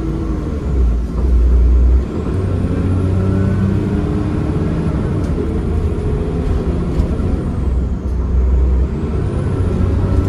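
Cummins ISCe 8.3-litre diesel engine and ZF Ecomat automatic gearbox of a Transbus ALX400 Trident double-decker bus running under way, heard inside the upper-deck cabin. The engine note rises and falls, with two heavier low surges, one about a second in and one near the end.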